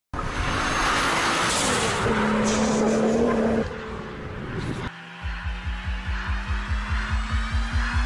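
A car driving hard past on the road, its engine note loud and shifting, dropping away about three and a half seconds in. About five seconds in, it cuts to electronic dance music with a fast, even kick drum and a slowly rising synth tone.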